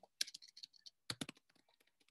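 Faint typing on a computer keyboard: a quick, irregular run of key clicks that stops about three quarters of the way through.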